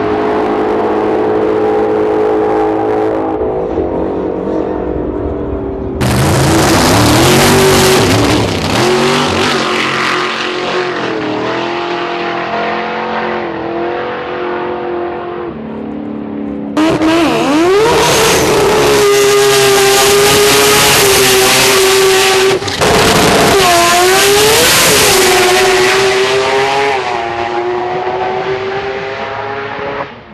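Drag-racing cars accelerating hard down the strip, engines at high revs, their pitch dipping and climbing again several times. The sound breaks off and restarts abruptly, louder, about six seconds in and again at about seventeen seconds, as one run gives way to the next.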